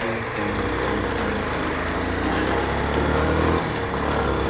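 Yamaha Fazer 250's single-cylinder four-stroke engine pulling under acceleration, its note climbing steadily, then changing abruptly near the end at a gear change. Road and wind noise lie underneath.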